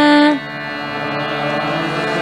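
Devotional chant music: a singing voice holds a long note that slides down and ends about a third of a second in, leaving a steady instrumental drone of many held tones.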